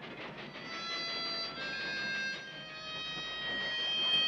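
A harmonica playing long held notes that change pitch in a few steps, over the noise of a train pulling away.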